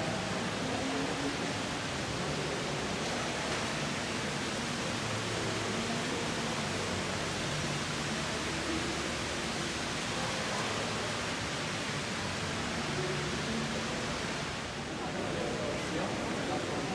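Steady hiss of a large indoor shopping mall's ambience, with faint, indistinct voices of people around.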